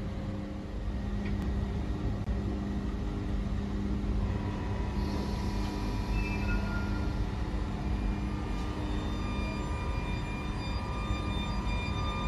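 SBB Re 460 electric locomotive pulling its train slowly into the platform: a steady low rumble with several whining tones, higher ones joining about four seconds in, and a brief hiss about five seconds in.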